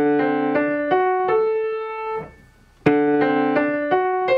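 Acoustic grand piano playing slow broken chords, single notes struck one after another, without the sustain pedal. The notes stop cleanly after a first group, leaving a short silence just past halfway, then a new group begins.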